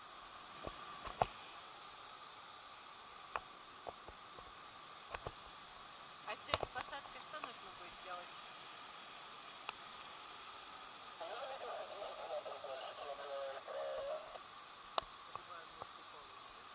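A faint, steady hiss with scattered sharp clicks. About eleven seconds in, a muffled voice is heard for about three seconds.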